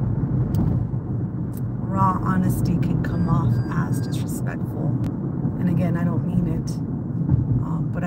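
Steady low rumble of a car driving, heard from inside the cabin, with a woman's voice speaking in short broken phrases over it.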